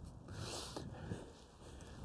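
Faint rustling of footsteps and clothing through long dry grass, fading out about halfway through.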